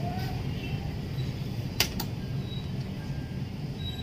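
Two sharp clicks in quick succession about halfway through, over a steady low hum.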